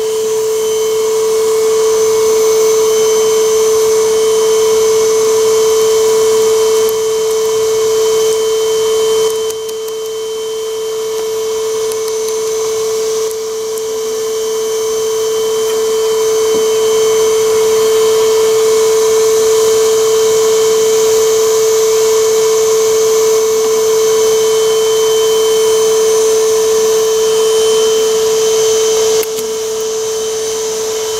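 Bee vacuum running steadily as it sucks honeybees off a swarm's comb: a constant motor hum with a fainter high whine, dipping slightly in level a couple of times.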